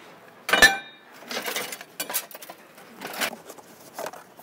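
Scrap metal clanking as someone rummages through a dumpster: one loud clang with a brief ring about half a second in, then a few softer scrapes and rattles.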